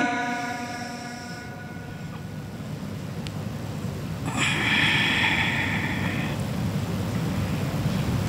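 A reciter's last sung note cut off and echoing away in a large mosque hall, then a pause over a low steady room rumble. About four seconds in comes a two-second breathy hiss close to the microphone, the reciter drawing breath before the next verse.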